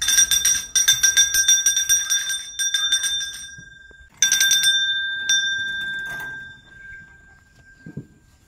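Small hanging brass temple bell (ghanta) rung rapidly by its clapper, several strikes a second for about three and a half seconds. A short second burst follows, then a single last strike, and the ring dies away.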